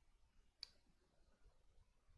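Near silence: room tone, with a single short click a little over half a second in.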